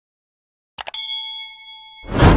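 Subscribe-animation sound effect: a quick pair of mouse clicks a little under a second in, followed by a bell ding that rings on in several steady tones and slowly fades.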